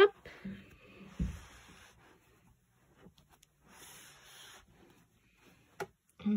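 Hands rolling up a thick terry-cloth towel with a soaked wool hat inside: soft rubbing and brushing of the fabric in two spells, with a dull thump about a second in.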